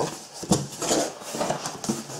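Flaps of a corrugated cardboard box being pulled open, the cardboard scraping and rubbing against itself, with a sharp knock about half a second in.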